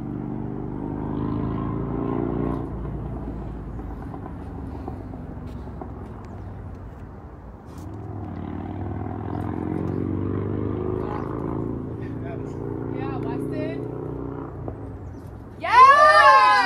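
A motor vehicle's engine passing, its pitch slowly rising for about seven seconds, then a second one doing the same from about eight seconds in. Near the end a sudden loud yell cuts in, the loudest sound here.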